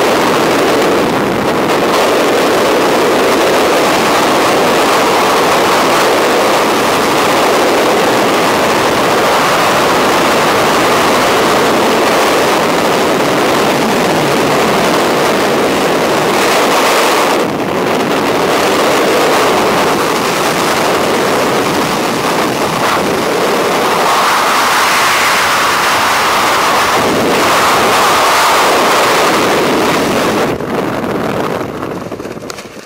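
Loud, steady rush of freefall wind buffeting the camera's microphone, briefly easing a little past halfway.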